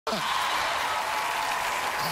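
Studio audience applauding steadily, with a man's brief word at the very start.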